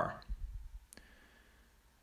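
The last word of a man's audiobook narration trails off into a pause of quiet room tone, with a single short faint click about a second in.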